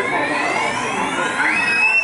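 A played-back sound effect: a long whistle-like tone slowly rising in pitch, then a short, steady, higher tone that bends up at its start about one and a half seconds in, over a murmur of crowd voices.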